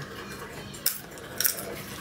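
Two light, sharp clicks about half a second apart, from a small hard object being handled at a table.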